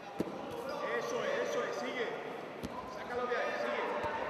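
Voices calling out across a sports hall, with a sharp knock just after the start and another about two and a half seconds in.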